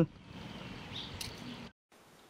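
Faint steady background hiss with a brief bird chirp about a second in. The sound cuts off abruptly near the end.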